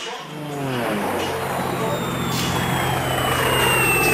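A handheld power saw running: its motor note drops in pitch in the first second, then holds a steady hum that slowly grows louder, with a thin high whine that gradually falls in pitch.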